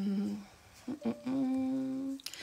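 A woman's two drawn-out hesitation sounds, each held on one steady pitch, the second a little higher.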